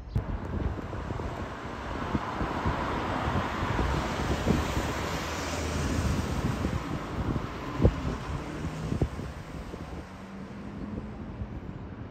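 Wind buffeting the microphone: a broad rushing noise with low crackling gusts that builds over the first few seconds and eases off near the end.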